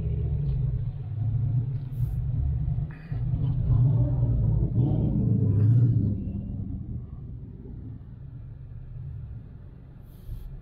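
Deep rumble of a Corvette's V8 engine running close by, loud for about six seconds and then fading away.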